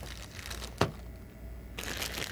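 Quiet handling of plastic-wrapped ink bottles from a refill kit: faint crinkling of the plastic, with one sharp click a little under a second in.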